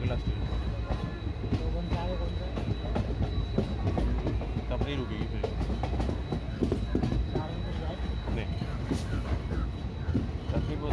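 Passenger train running along the track, heard from an open coach doorway: a steady rumble of wheels on the rails with scattered short clicks.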